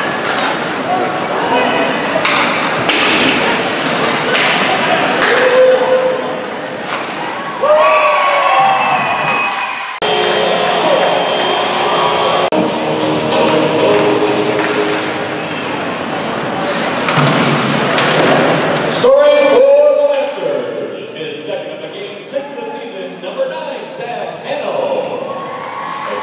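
Ice hockey game sounds in a rink: players and spectators shouting, with the thuds of pucks, sticks and bodies hitting the boards.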